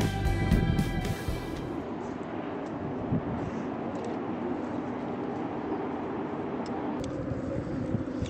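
Background music with steady held notes stops about two seconds in. It gives way to a steady outdoor noise with a low rumble of distant road traffic.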